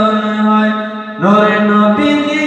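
A man singing a Bengali Islamic ghazal solo, holding long drawn-out notes. He breaks briefly a little past halfway and starts a new phrase.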